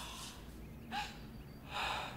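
A woman's gasping breaths in distress, a short one about a second in and a longer one near the end.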